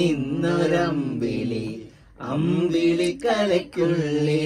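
A man's voice chanting in long held notes, two phrases with a short break about two seconds in.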